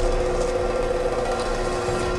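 Film background score in a held, droning passage: two steady sustained tones over a low rumble, with no beat.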